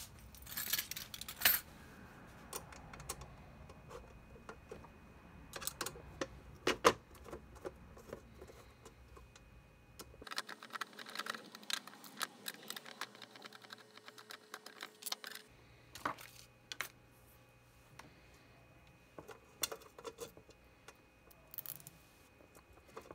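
Irregular small metal clicks and clinks of a screwdriver working the screws on a Prusa MK52 heatbed's power-lead terminals, with the ring lugs, washers and nuts being handled. The loudest clicks come about a second in and around seven seconds, with a busy run of clinks past the ten-second mark.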